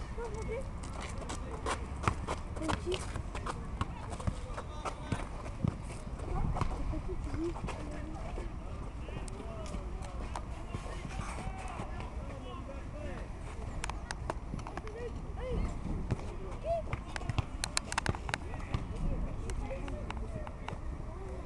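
Distant, overlapping shouts of young footballers and spectators calling across a pitch, with scattered sharp knocks of the ball being kicked. The knocks come most thickly near the end.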